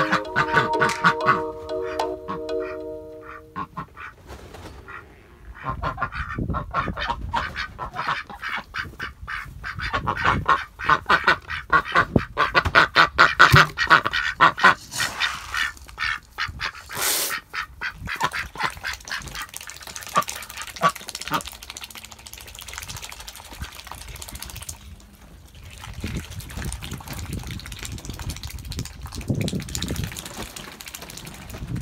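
Several white domestic ducks quacking in a busy, overlapping chatter, loudest about ten to fifteen seconds in. The chatter thins out toward the end. Music fades out in the first few seconds.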